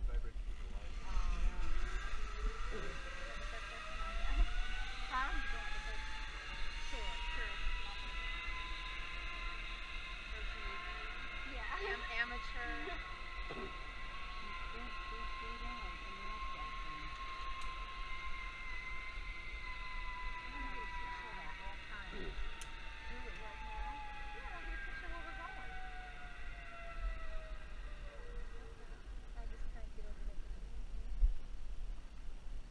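Zipline trolley pulleys rolling along the steel cable as a rider goes down the line: a whine that rises in pitch as the rider picks up speed, holds for a while, then falls away near the end as the rider slows.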